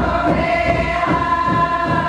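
A group of women singing a song together in a circle, holding long, steady notes.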